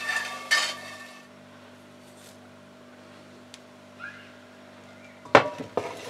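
A metal spatula scraping fried pancetta cubes out of a dark metal frying pan, the cubes clattering onto paper towel, for about the first second. Then a steady low hum, and a sharp knock about five seconds in.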